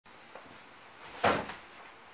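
A sharp knock about a second in, with a lighter click just after, made by a person moving about a small room on the way to a wooden chair; otherwise faint room tone.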